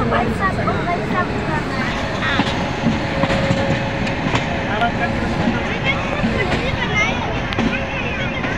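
Steady running noise of a passenger train rolling along the tracks, heard from inside the coach at an open barred window, with people's voices in the carriage over it.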